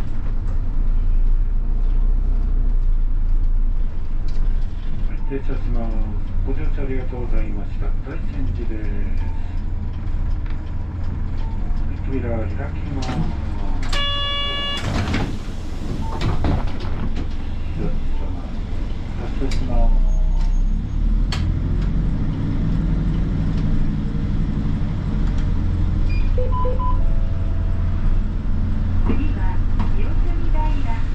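Interior of a Hino Poncho small bus on the move: its diesel engine and the road give a steady low drone. A short chime sounds about halfway, followed by a brief rush of air.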